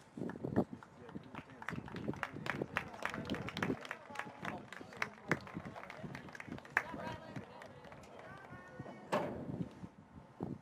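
Soccer match sideline sound: indistinct voices of players and onlookers, with many short knocks and taps throughout. A drawn-out call comes near the end, followed by a louder thud about nine seconds in.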